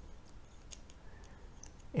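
Faint, light metallic clicks and scraping from the threaded parts of a metal Kaweco Supra fountain pen being handled and screwed together, a few scattered ticks over the two seconds.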